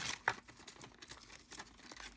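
Faint rustling and ticking of paper cardstock being handled, with a couple of sharp clicks at the start.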